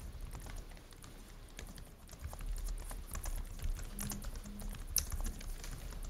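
Typing on a computer keyboard: irregular light key clicks over a low background hum, with one sharper click about five seconds in.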